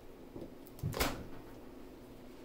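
Handling noise as the power cable and the Echo Show smart display are picked up and moved on a fabric-covered table: a few short, soft knocks in the first half, the loudest about a second in, over faint room noise.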